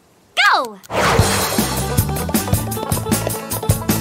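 A shouted "Go!", then upbeat background music that starts abruptly about a second in and runs on with a quick, steady beat of about four strokes a second.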